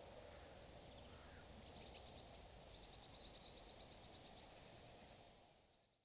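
Faint outdoor ambience with a high, rapid trill of short chirps, about ten a second, in two runs near the middle. The ambience fades out at the end.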